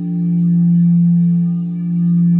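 Crystal singing bowl ringing with a sustained, steady tone, its loudness swelling and fading slowly, dipping about every two seconds.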